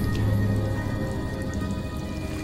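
Recorded rain falling over a steady, low musical backing: the rain-and-thunder opening of a song, with no singing.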